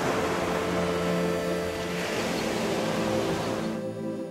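Ocean surf washing onto a sandy beach, a steady wash that cuts off near the end, under soft background music with long held notes.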